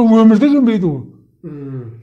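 Men talking: a higher voice for about a second, a short pause, then a lower, quieter voice.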